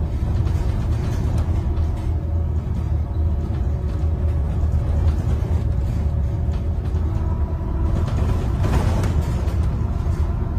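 Interior of a moving city bus: a steady low rumble of the drive and road, with a few steady whining tones over it. A brief hiss comes near the end.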